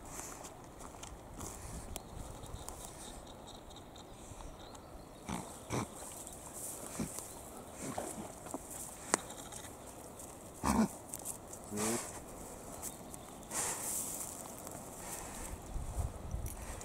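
A German shorthaired pointer swims to the riverbank with a dead nutria in its jaws and climbs out, with water sloshing and splashing. There are scattered short knocks in the middle and two brief vocal sounds from the dog about two-thirds of the way through.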